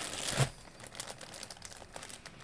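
Clear plastic bag around a basketball jersey crinkling as it is handled, loudest in the first half second, then lighter crinkles and ticks.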